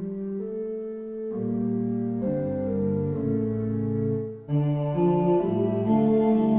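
Organ playing held chords in a slow hymn setting, the chords changing every second or so; the sound breaks off for a moment about four and a half seconds in and comes back louder.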